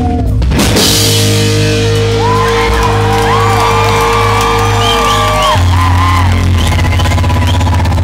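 Live rock band playing loud, with distorted electric guitars, bass and drums. After a brief drop just after the start, long held notes ring on with wavering higher tones over them, and the low notes change about five and a half seconds in.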